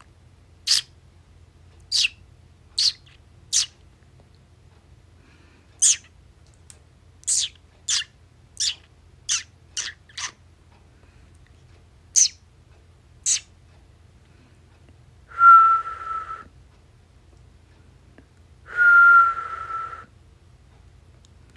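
A person whistling to a pet cockatiel, trying to get it to answer: two held whistled notes, each about a second long and dipping slightly in pitch, come about three seconds apart in the last third. Before them come about a dozen short, sharp, high sounds, spaced irregularly.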